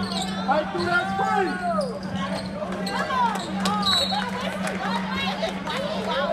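Basketball game play on a hardwood gym court: sneakers squeaking repeatedly as players cut and run, and a basketball bouncing, over a steady low hum.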